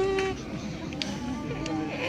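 Audience members buzzing their lips, the lip vibration that sounds an alphorn's note: a held buzzing tone stops shortly after the start, followed by fainter wavering buzzes among voices.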